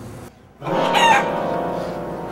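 A rooster crowing, starting about half a second in: one long call that fades out slowly.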